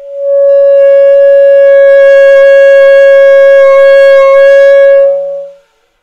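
Solo alto saxophone holding one long, steady note for about five seconds, then tapering off and stopping.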